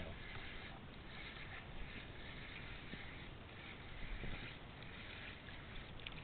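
Steady noise of wind and small choppy waves around a kayak on open water, with a few faint knocks.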